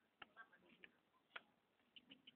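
Near silence with three or four faint, sharp clicks spread through the two seconds.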